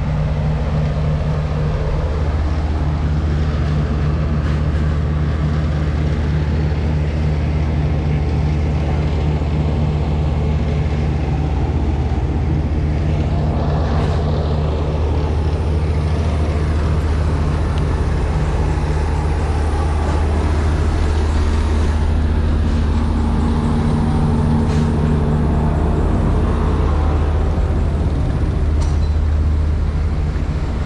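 Refrigerated box trucks idling, a steady low engine drone that grows slightly louder in the second half.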